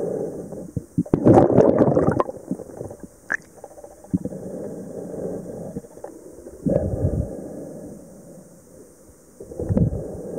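Muffled underwater sound heard through a camera's waterproof housing: water sloshing and bubbling around the camera, in louder surges about a second in, near seven seconds and near the end, with quieter churning between.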